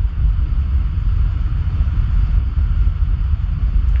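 Steady low rumble with a faint hiss above it, and no speech.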